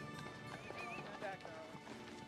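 Horse hooves clip-clopping at a walk over background music, with a short wavering horse whinny about halfway through.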